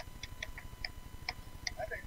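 A few faint, sharp clicks at irregular intervals, with faint voices coming in near the end.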